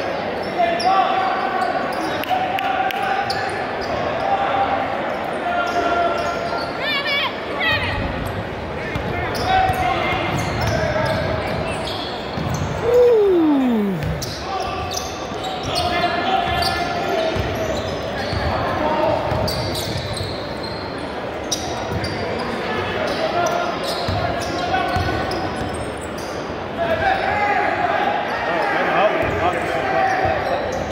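Basketball being dribbled and bounced on a hardwood gym floor during play, with players and spectators calling out, all echoing around a large gymnasium. About halfway through a short tone falls steeply in pitch.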